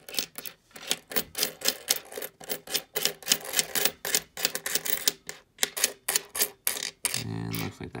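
Nickels clinking and clattering against each other and a hard tabletop as a stack of them is spread out by hand: quick irregular clicks, several a second, stopping just before the end.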